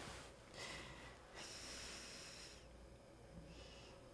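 Faint breathing: a short breath in about half a second in, then a longer, slow breath out.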